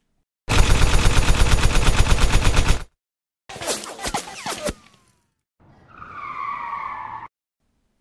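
A burst of rapid submachine-gun fire, about eleven shots a second for roughly two seconds, then a few sharp cracks with falling whines, and a long tire screech as a car skids to a stop.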